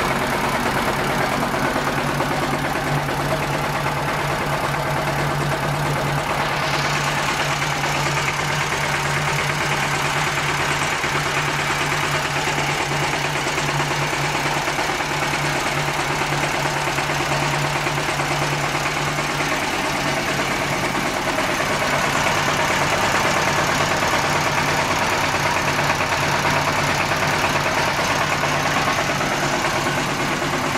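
Single-cylinder diesel engine of a mini tractor idling steadily, its fan and belt drive turning. The sound shifts and grows a little louder about two-thirds of the way through.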